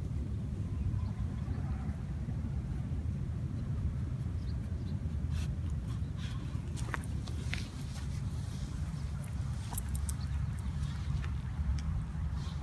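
Outdoor ambience with a steady low rumble, and faint scattered clicks and crackles of a small dog stepping and nosing about in dry wood-chip mulch.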